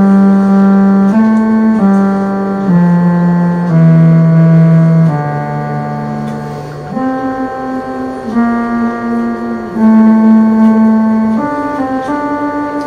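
Electronic kanonion, a keyboard instrument built for Byzantine music, playing a slow melody one note at a time. Each note is held about a second, with a softer stretch about halfway through.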